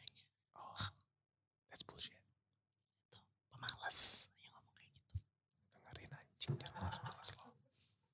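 Whispered speech close to a microphone, in short scattered phrases with pauses between them and a sharp hiss of breath or an 's' about four seconds in.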